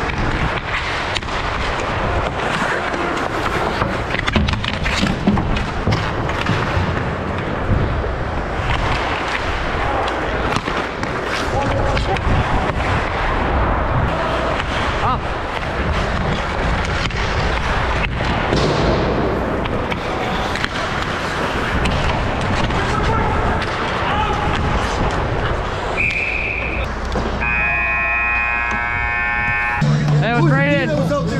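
Ice hockey play: skate blades scraping and carving the ice, with many sharp clacks of sticks and puck, under shouting voices. Near the end a brief high tone sounds, followed by a steady tone of a couple of seconds.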